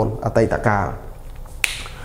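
A man's voice speaking briefly, then a single sharp click a little past the middle.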